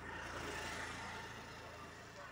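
A road vehicle passing, its noise swelling during the first second and then easing off.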